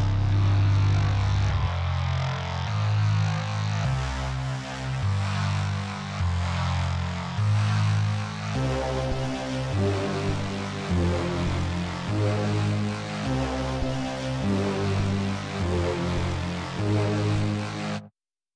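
Background electronic music with a deep, stepping bass line; a higher melody joins about halfway through.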